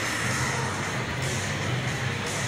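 Steady, loud roar from the soundtrack of a military promotional film played through an exhibition stand's loudspeakers.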